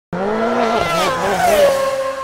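Race car engine passing at high revs, its pitch dropping steeply about three-quarters of the way in as it goes by, then settling to a held note that begins to trail off.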